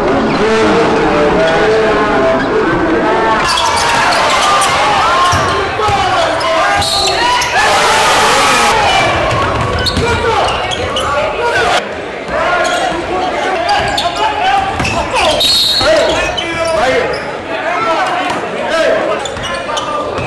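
Basketball being dribbled on a gym floor, repeated bounces, with players' and spectators' voices.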